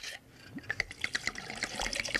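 Clear liquor glugging out of a bottle as it is poured into a cocktail shaker: a quick, uneven run of small gurgles starting about half a second in.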